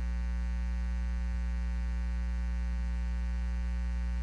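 Steady electrical mains hum, buzzy with many evenly spaced overtones and strongest at the bottom.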